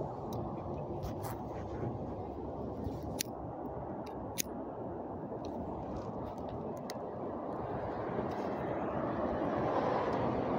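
Steady low rumbling noise of a roadside outdoors, traffic and wind on the body-worn microphone, with a few faint clicks; it grows louder near the end.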